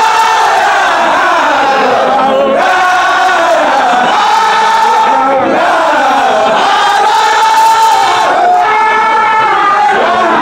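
A large group of men chanting a Sufi zikr in unison, loud, with a held, gliding melodic line sung in phrases about three seconds long.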